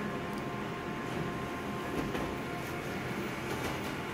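Konica Minolta colour multifunction copier running while it prints a full-colour copy: a steady mechanical hum with a faint whine, and a few light clicks about two seconds in and near the end.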